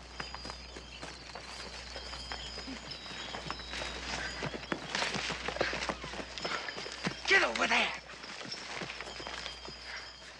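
Footsteps and horses moving through forest undergrowth, with scattered snaps and clops. A short cry falls in pitch about seven seconds in.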